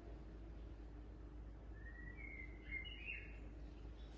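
Faint, brief high chirping of a bird, a few short sliding notes about two seconds in, over a low steady hum of room tone.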